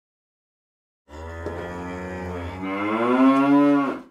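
A single long, low call like a cow's moo starts abruptly after silence about a second in. Its pitch rises partway through and holds, then it cuts off suddenly.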